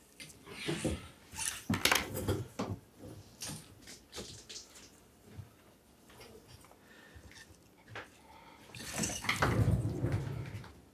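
Light clicks and taps of plastic struts and connectors being handled and fitted together by hand, thickest in the first few seconds. A louder stretch of rustling comes near the end.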